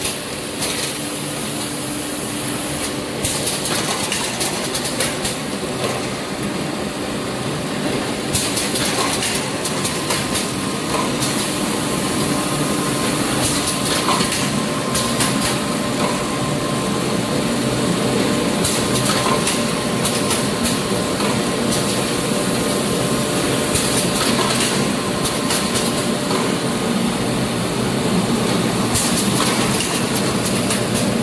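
Automated paint roller finishing line running: a steady machine din with clattering, and a burst of high hiss every few seconds.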